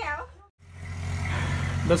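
A voice trails off into a brief moment of silence, then a steady low hum fades in and holds until speech starts again near the end.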